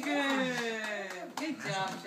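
A toddler's long, drawn-out vocal sound, sliding slowly down in pitch, followed by a few short babbled syllables near the end.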